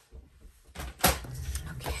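A sharp knock about a second in, with a lighter one just before it, then a short scraping rub as cardstock is scored in half on a paper trimmer.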